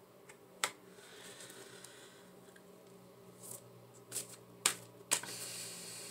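Tarot cards being handled: a few sharp, light clicks and taps, the loudest just over half a second in and a cluster about four to five seconds in, over a faint steady room hum.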